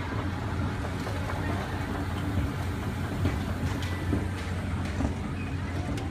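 Circa-1987 Montgomery escalator running under the rider: a steady low hum from the drive and moving steps, with a few faint clicks.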